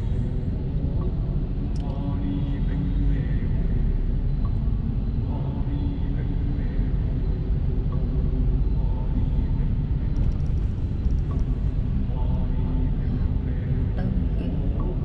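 Steady low rumble of a Mercedes-Benz car's cabin while it drives slowly through traffic: road and engine noise heard from inside.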